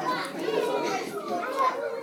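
Several children's voices talking over one another at a lower level, a jumble of chatter with no one voice clear.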